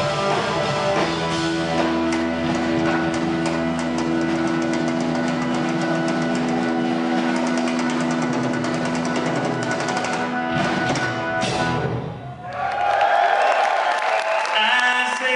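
A live rock band playing loud: electric guitar holding long sustained notes over drum-kit rolls and cymbals. A few hard hits follow, then the band stops short about twelve seconds in.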